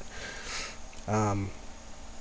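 A man's sniff or breath in through the nose, then a brief wordless voiced sound like a short "mm" just after a second in.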